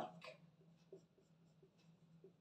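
Faint squeaky strokes of a felt-tip marker on a whiteboard: a quick run of short scratches as small marks and letters are drawn, over a faint steady low hum.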